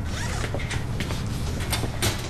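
A bag's zipper being pulled: a run of short rasps, the sharpest near the end.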